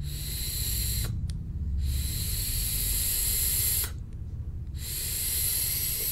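Long hissing puffs on a tube-style e-cigarette mod with a 0.6-ohm coil tank set to 40 watts: air drawn through the atomizer and vapor breathed out, in three stretches with short breaks between them.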